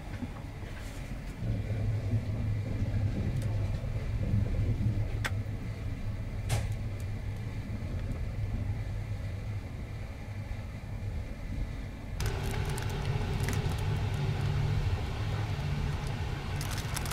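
Low rumble of a passenger train running, heard from inside the compartment, with two sharp clicks about five and six and a half seconds in. About twelve seconds in the sound shifts to a fuller hum with a faint steady tone and some light crackling.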